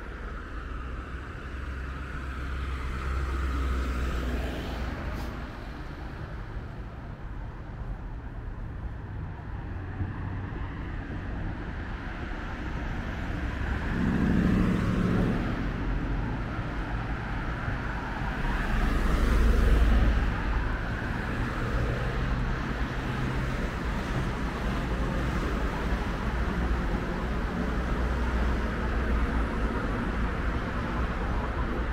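Road traffic on the adjacent street: a steady low rumble of cars, with vehicles swelling past a few seconds in, about halfway, and loudest about two-thirds of the way through.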